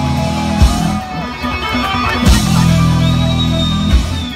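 Live instrumental rock band: electric guitars holding heavy sustained chords over bass, with loud drum hits landing about every one and a half seconds. A high held guitar note comes in about three seconds in.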